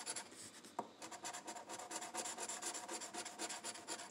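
A coin scratching the coating off a lottery scratch-off ticket: a fast, faint run of short rasping strokes, with one sharper click just under a second in.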